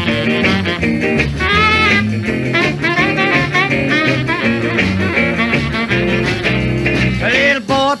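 Instrumental break of a 1963 rock-and-roll record: the band plays on with a steady swinging beat and no vocal, and the singing comes back in right at the end.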